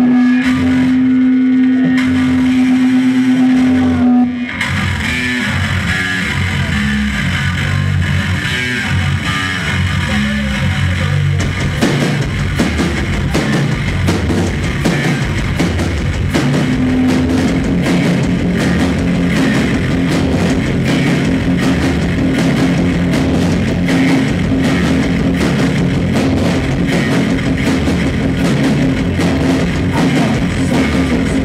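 Live noise-rock band playing: guitar, bass guitar and drum kit. A single held note sounds alone for about four seconds before the full band comes in, and a second long held note rises over the riff about halfway through.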